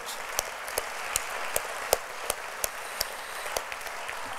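Audience applauding, with sharper single claps close to the microphone, about three a second.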